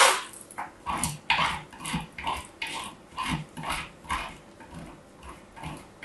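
Dry bar soap crunching as a small metal shape cutter is pressed and worked into it, in short crisp strokes about twice a second, the loudest right at the start.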